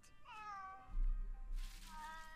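Cartoon cat meowing from the episode's soundtrack: one falling meow about a quarter of a second in, a softer pitched call later, and a low rumble in the second half.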